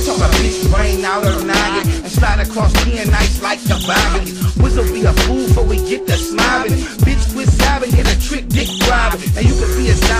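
Hip hop track: a rapped vocal over a beat of deep bass kicks that fall in pitch and steady hi-hats.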